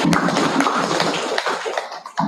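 A small group of people applauding, a dense patter of hand claps that thins out and dies away near the end.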